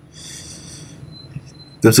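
A pause in a man's speech, filled for about a second by a faint high-pitched hiss, with a thin faint tone after it; his voice comes back in near the end.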